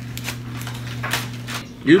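A few short, noisy mouth sounds of sipping and smacking as a drink is tasted from a small cup, over a steady low hum.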